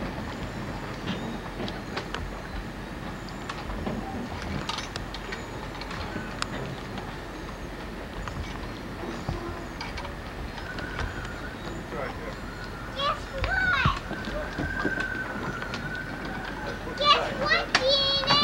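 Outdoor background haze with scattered light knocks and clicks, and a thin high tone held for several seconds in the second half. Children's high voices call out briefly twice in the second half, the louder call near the end.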